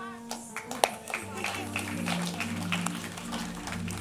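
Soft, sustained keyboard chords held under a pause in a church service, with scattered handclaps and murmurs from the congregation; one sharp clap a little under a second in.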